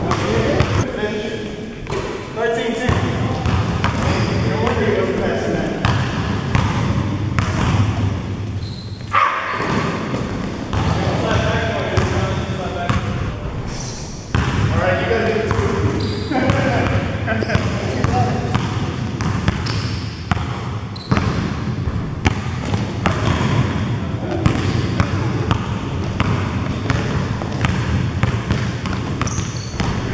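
A basketball bouncing and being dribbled on an indoor gym floor, in repeated sharp knocks, under indistinct shouting and chatter from the players.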